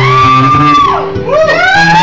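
Acoustic guitar playing a song's intro, with two high, drawn-out whoops from the audience over it: the first rises, holds and falls away about a second in, and the second rises and holds near the end.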